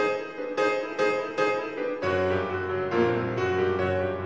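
Solo grand piano playing a fast, vigorous classical passage: sharp repeated chords in the treble for the first half, then deep bass notes come in about halfway and the sound grows fuller and sustained.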